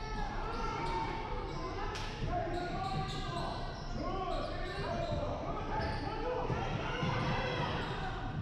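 Basketball game in a gym: a ball bouncing on the hardwood court amid continuous spectator and player chatter, echoing in the large hall, with one sharp knock about two seconds in.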